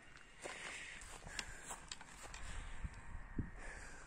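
Faint footsteps crunching on a gravel track, a scatter of short uneven steps, over a low rumble.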